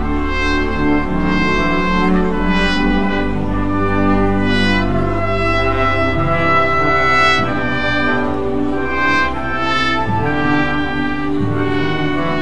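Music played on brass instruments, a run of held notes that change pitch every second or so, with a steady low bass underneath.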